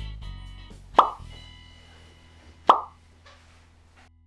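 Two short, sharp pop sound effects about a second and a half apart, each quickly dropping in pitch, over soft background music that fades out.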